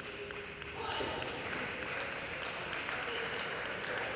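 A short table tennis rally: a few light ball strikes on bat and table, then steady applause from about a second in as the point is won.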